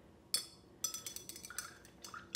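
A paintbrush clinking against hard, glassy painting dishes: one sharp clink, then a quick run of lighter clinks with a short ringing tone, starting about a second in.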